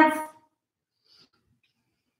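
A woman's voice trailing off at the end of a drawn-out counted number, then near silence: room tone.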